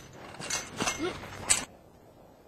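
A chain-link fence rattling and scraping as a man climbs it, with irregular rustling and a few sharp scrapes. A brief vocal sound, like a grunt of effort, comes about a second in.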